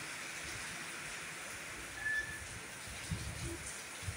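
Steady rain falling on a rooftop concrete terrace and its plants, an even hiss of water.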